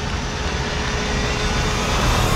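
Steady rushing wind, a film sound effect for a climb high on a tower face, with a faint tone rising slowly beneath it.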